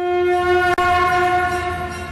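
A single loud sustained note from a news bulletin's intro music, starting suddenly, held steady, then fading near the end, with a brief click about a third of the way in.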